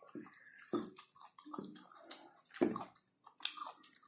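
Close-miked wet chewing and lip-smacking as a person eats rice and meat by hand, in irregular short clicks and squelches. The loudest smacks come about three-quarters of a second in and again past two and a half seconds.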